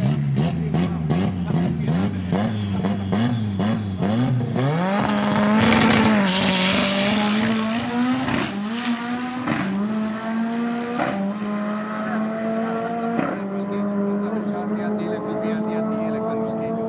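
Turbocharged Toyota Starlet drag car's engine revving up and down about twice a second at the start line, then launching hard about five seconds in. It pulls away down the strip, the pitch dropping at each of four upshifts.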